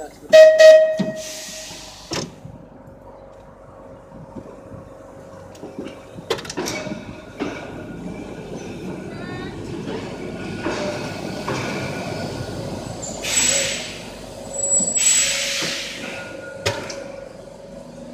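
1934 English Electric open-top tram rolling slowly on rails, its motors and wheels rumbling louder from about halfway. A loud ringing strike sounds about half a second in, there are a few sharp clicks, and two short bursts of hiss come near the end.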